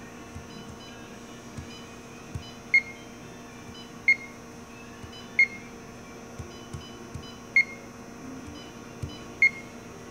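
Short high electronic beeps from a press brake's touchscreen controller as keys on its on-screen number pad are pressed, five in all, with faint finger taps in between, over a steady electrical hum.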